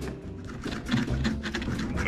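Table knife sawing through a thin, very crisp pizza crust on a plate: a run of small, irregular crunches and scrapes as the crust barely gives.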